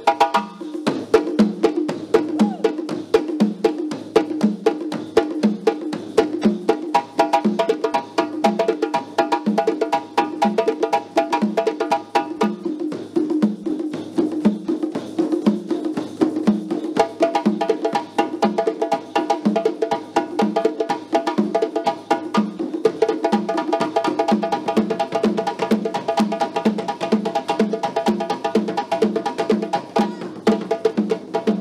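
Group hand percussion in a steady repeating rhythm: many claves clicking and egg shakers rattling over djembe and stick-struck drum strokes.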